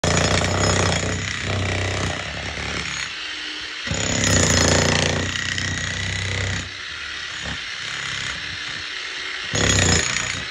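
Corded electric demolition hammer with a point chisel pounding into old concrete and earth. The hammering runs throughout, swelling and easing, loudest in the first couple of seconds and again about four seconds in.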